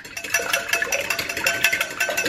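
Eggs being beaten fast with a metal utensil in a glass bowl: rapid clinks, around ten a second, each with a short ring from the glass.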